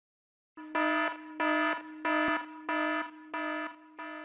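Electronic alarm sound effect: a steady, buzzy tone that swells into a loud beep about every two-thirds of a second, six beeps in all, trailing off at the end.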